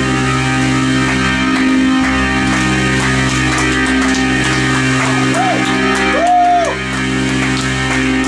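Live rock band playing: electric guitar and keyboard over a sustained, held chord, with a few bent notes rising and falling about six seconds in.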